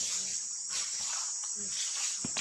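Steady, high-pitched chorus of insects.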